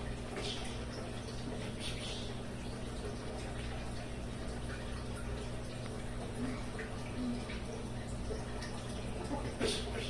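Steady low background hum with a faint even hiss. Faint voices are heard briefly in the middle, and a single spoken word comes near the end.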